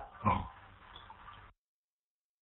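A brief vocal noise from the lecturer just after he stops speaking, then faint hiss that cuts off to dead silence about a second and a half in.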